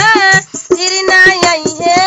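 A young woman singing a desi folk song unaccompanied by instruments other than percussion: long, held, wavering notes over steady percussion beats, with a short break for breath about half a second in.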